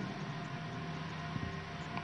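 A pause in speech: faint, steady background hiss with a faint hum running through it, with nothing happening in it.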